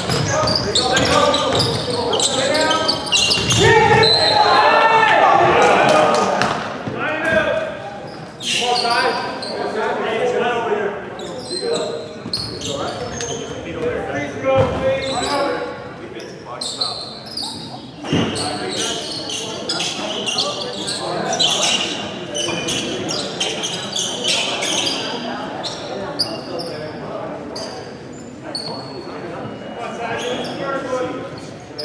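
A basketball bouncing on a hardwood gym floor amid players' voices and shouts that echo around a large gym. The voices are loudest in the first six seconds.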